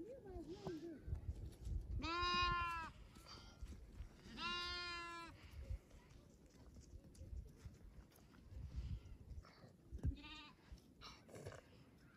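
Baby goat bleating: two long, quavering bleats a couple of seconds apart, then a shorter one near the end.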